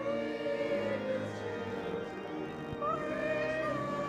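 A small church congregation singing a hymn together, holding long notes and sliding between them.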